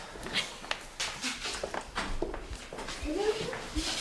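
Footsteps of several people walking across a hard floor, a series of quick uneven taps. Voices come in over them near the end.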